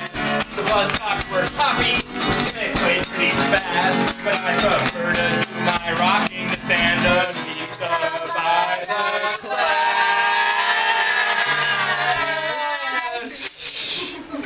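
A live acoustic guitar strummed under a man's sung vocal, with small bells jingling along: cat-collar bells worn on the feet. About seven seconds in the strumming thins out, and a long, wavering held note is sung before the chorus.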